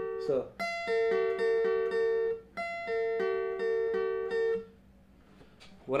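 Steel-string acoustic guitar picking a single-note arpeggio pattern across the top three strings high on the neck, played as two matching phrases of about two seconds each. The last notes die away about a second before the end.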